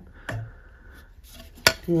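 A makeup palette being handled: quiet handling noise, then one sharp click about three-quarters of the way through, then a voice begins.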